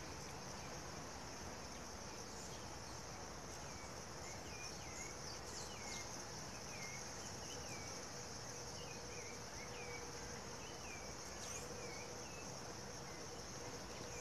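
Steady, high-pitched insect chorus, with a run of short, falling chirps between about four and twelve seconds in.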